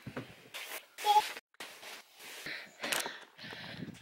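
A crinkly mattress protector rustling in irregular bursts as it is pulled and stretched over a mattress.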